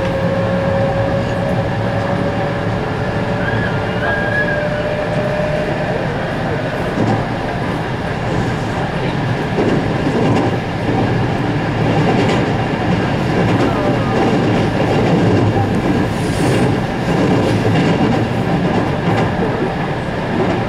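Running noise of a JR West 221 series electric train heard from inside the passenger car: a steady rumble of wheels on rail throughout. A faint tone rises slowly in pitch over the first few seconds.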